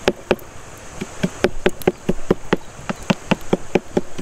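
Cleaver chopping fresh herbs on a wooden cutting board: sharp knocks of the blade on the wood, two near the start, then a fast run of about four to five chops a second from about a second in.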